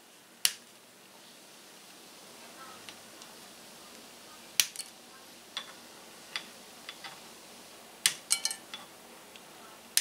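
Small flush-cut clippers snipping the tails off plastic zip ties: three sharp snaps a few seconds apart, the last followed by a quick rattle of small clicks, with lighter ticks of handling in between.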